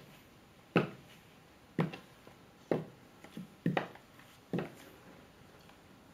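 Clear acrylic platform high-heel mules striking a hard tiled floor in walking steps: five sharp clacks about a second apart, the fourth a doubled click, stopping about four and a half seconds in.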